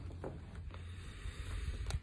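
Faint handling of a tarot deck, with a few light clicks of the cards being squared against the table, the clearest near the end, over a low steady room hum.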